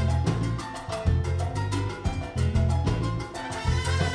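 Live salsa band playing: a brass section of trombone and trumpets over a repeating bass line and steady Latin percussion.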